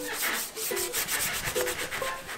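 Paintbrush strokes spreading white paint across corrugated cardboard, a quick run of short brushing rubs.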